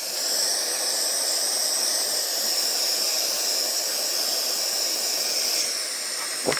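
Handheld gas torch burning with a steady hiss as its flame is played over heat-shrink tubing on a soldered wire joint to shrink it.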